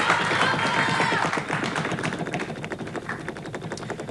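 Game-show prize wheel spinning, its pointer clicking rapidly against the pegs round the rim; the clicks slow and thin out as the wheel loses speed.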